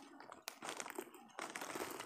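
Thin plastic snack wrapper crinkling faintly in the hands in short, scattered crackles as the packet is opened.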